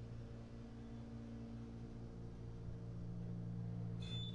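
Steady low hum inside a moving Otis Gen2 traction elevator car on its way up, with a faint higher tone running alongside that fades out a little past halfway.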